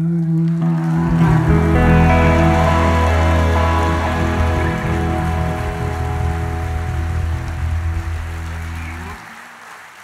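Live band holding the song's final chord on electric guitar and keyboard. The low notes stop abruptly about nine seconds in, and the rest fades away.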